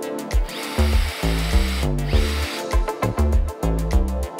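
Cordless drill boring holes into a drawer front panel, in two runs: a long one of about a second and a half, then a short one about two seconds in. Background electronic music with a steady beat plays throughout.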